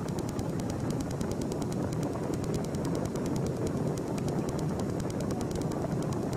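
Steady racetrack background noise while the pacers race past just after the start: a low, even rumble and hiss with no distinct events.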